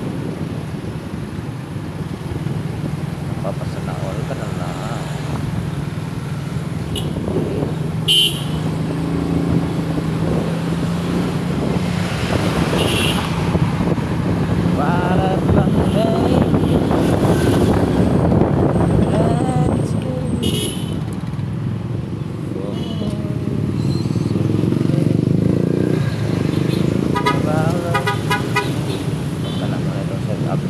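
City traffic heard from a moving vehicle: a steady engine and road hum with vehicles passing close by. A horn toots, and a run of short, evenly spaced high beeps comes near the end.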